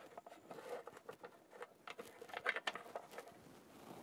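Faint, scattered small clicks and rustling from electrical wires with plastic wire nuts being pushed by hand down into a junction box.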